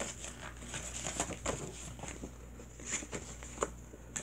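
Sheets of paper and a cardboard folder being handled: soft rustling with a scattering of light taps and clicks.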